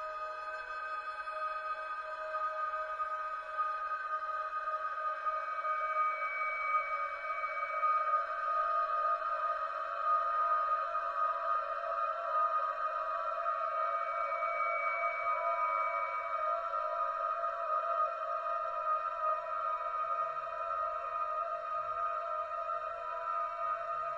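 Contemporary chamber music played on bowed strings: long, steady held notes with several pitches sounding together, swelling a little louder a few seconds in and then holding.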